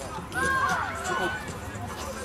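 A person shouts a long, held call from about half a second in, lasting about a second, over background chatter of voices at a football pitch.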